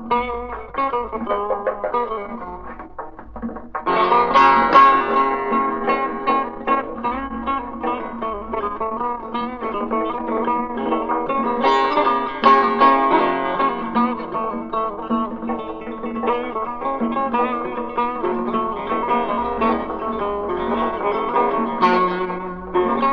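Persian classical music played on a plucked string instrument, in the mode of Bayat-e Esfahan. The playing is sparse and softer at first, then turns fuller and louder about four seconds in.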